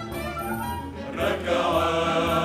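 A mixed choir singing with string orchestra accompaniment, the sound swelling louder about a second in.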